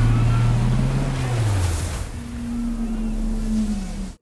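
Dramatic sound design of surging ocean water under a deep, drawn-out tone that slides lower over the first two seconds. A higher held tone follows and sags near the end.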